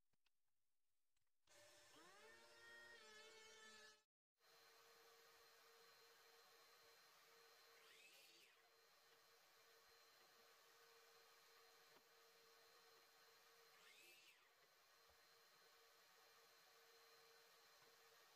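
Near silence: only a faint steady hum, with a faint rising whine about two seconds in.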